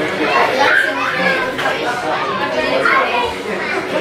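Overlapping voices of children playing and people chattering in a large room, with no single voice standing out.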